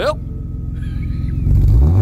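Motor vehicle engine running, a rapid low rumble, after a short rising sweep at the very start; a lower pitched sound comes in near the end.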